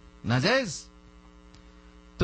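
Steady electrical mains hum in the recording, heard through a pause in the speech, with one short spoken syllable about half a second in.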